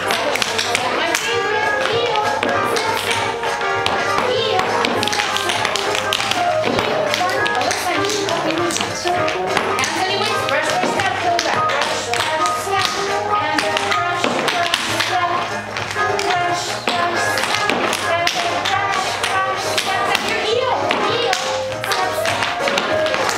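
Children's tap shoes tapping and stamping on a wooden studio floor in quick, irregular clicks, over recorded music.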